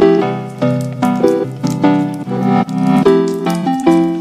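Instrumental background music: keyboard chords played in a steady rhythm.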